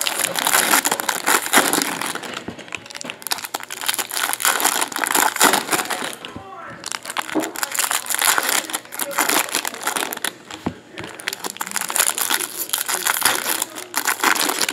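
Foil wrappers of trading-card packs crinkling as hands tear them open, with a short lull about halfway through.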